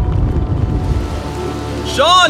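A steady rushing noise, like rain or running water, with a low rumble and a few faint held music tones beneath it, easing slightly before it cuts off.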